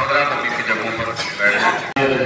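A crowd of men's voices chanting and calling out together, with a rising high-pitched cry about a second in; the sound cuts off abruptly just before the end.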